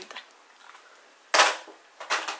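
A single sharp crack about one and a half seconds in, dying away within a fraction of a second, over faint room tone.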